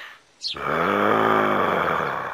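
A man's voice giving one long, drawn-out, gravelly 'A-ha!' cry, held for about two seconds and falling slightly in pitch, starting about half a second in.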